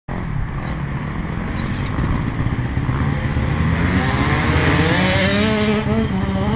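Dirt bike engine running close by. Its pitch climbs steadily over the last two seconds as it is revved up.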